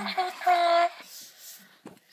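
A person's voice makes a short drawn-out vocal sound in the first second, holding one note briefly. Then comes a faint crinkly rustle of a disposable diaper's paper and plastic being opened, with a small click near the end.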